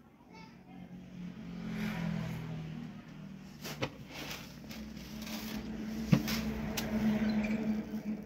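Indistinct voices in the background, with a few sharp knocks, the loudest about six seconds in.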